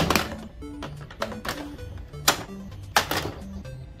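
Hard plastic toy foam blasters knocking and clattering as they are handled and set down in a pile on a wooden table: four or five sharp knocks, the first the loudest, over background music.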